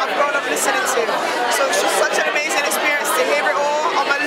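Speech: a woman talking, with crowd chatter behind her.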